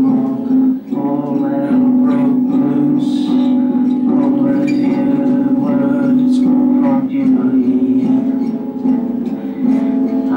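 A man singing, accompanied by a strummed acoustic guitar.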